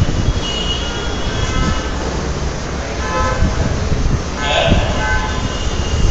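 Loud, steady background rumble with several short, steady horn-like toots at different pitches over it.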